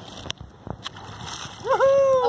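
Water splashing and sloshing faintly around a diver at the surface, with a few small clicks. Near the end a person's voice breaks in with a drawn-out exclamation that falls in pitch.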